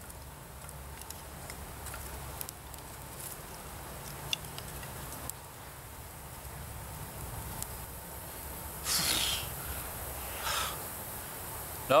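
Small kindling fire burning in the slits of a split spruce log, with a few faint crackles and snaps, then two short breathy blasts of someone blowing into it about nine and ten and a half seconds in. A low steady hum lies underneath.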